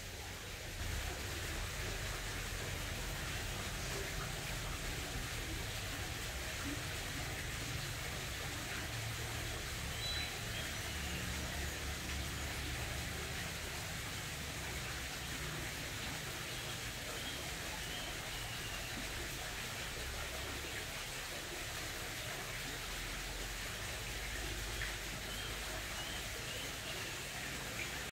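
Steady background hiss with an uneven low rumble, and a few faint, short high chirps scattered through it.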